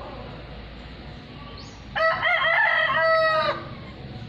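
A single loud, drawn-out bird call starting about two seconds in and lasting about a second and a half.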